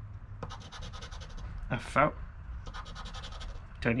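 A poker-chip-style scratcher rubbing the silver coating off a paper scratch-off lottery ticket in rapid back-and-forth strokes. There are two runs of scratching, each about a second long, with a short pause between them.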